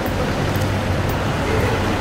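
Steady low rumble and hum of traffic and background noise in a multi-storey car park stairwell.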